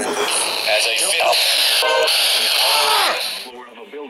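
Loud radio static hiss with a broadcast voice faintly under it, cutting off suddenly about three and a half seconds in.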